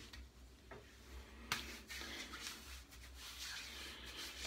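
Faint rustle of hands rubbing aftershave balm into a freshly shaved scalp, with one small click about a second and a half in.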